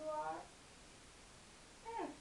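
Two drawn-out wordless vocal sounds with gliding pitch. The first runs on from just before and ends about half a second in; a shorter one that falls steeply in pitch comes near the end.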